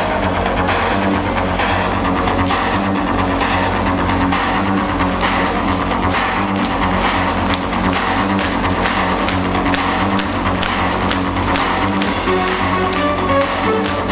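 Loud live electronic darkwave music from a band on stage through a club PA, with a steady beat. A stepping synth melody comes in near the end.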